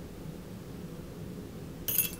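Quiet room tone, then near the end a single short metallic clink with a high ringing as the twin-spin spinnerbait's metal blades and wire are handled at the vise.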